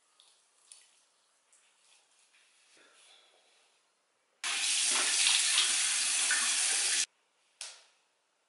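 Bathroom sink faucet running, an even rush of water for about two and a half seconds that stops suddenly. Before it come faint, scattered splashing and rubbing sounds from face rinsing, and a brief sound follows shortly after it stops.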